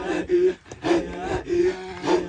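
Maasai men's group chant: rhythmic guttural breathy grunts about twice a second over a repeated low held vocal note.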